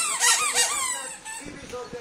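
Squeaky dog-toy ball squeezed by hand, giving a few quick high-pitched squeaks in the first second.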